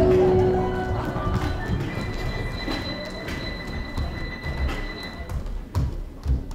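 A held music chord dies away, then a clatter of running footsteps and knocks on a wooden stage.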